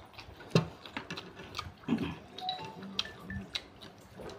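Close-miked eating sounds of a man chewing chicken rendang eaten by hand: wet chewing and lip smacks, the sharpest smack about half a second in, with a few short low hums near the end.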